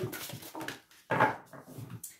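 A deck of oracle cards shuffled by hand: soft rustling and light taps of the cards, with one louder rustle about a second in.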